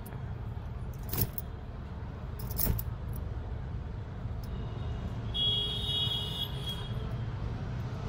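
Wet laundry being shaken out by hand: two sharp snaps of cloth, about a second in and again near three seconds, over a steady low rumble. A brief high-pitched sound is heard around six seconds in.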